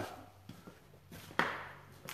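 Footsteps going down a flight of stairs: a few faint taps, then one sharp knock of a foot a little past halfway.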